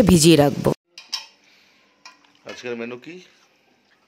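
A woman's voice trails off early, then a couple of short, sharp clinks of a steel bowl and utensil, and a brief voice sound a little past halfway.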